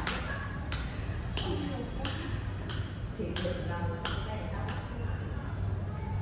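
Low voices with a run of sharp taps, roughly one every half second to second, each ringing briefly, over a steady low hum.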